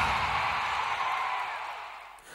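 The end of an electronic TV intro theme, a noisy tail without clear notes fading steadily away.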